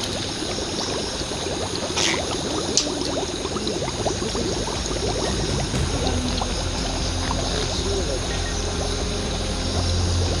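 Natural gas from a leaking underground pipeline bubbling up through muddy standing water: a continuous gurgling made of many small pops.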